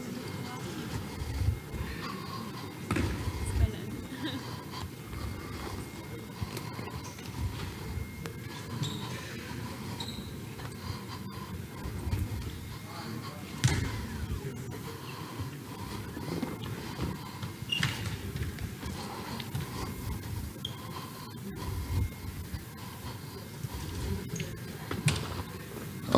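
Sports-hall sound of a training session: scattered thuds of balls bouncing and footsteps on the court, over indistinct voices in the large hall.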